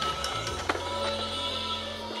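Small electric motor of a toy Christmas train whirring as it runs around its plastic track, with music playing.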